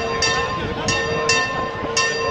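Church bell rung quickly, about four strikes in two seconds, each strike ringing on into the next, over the murmur of a large crowd.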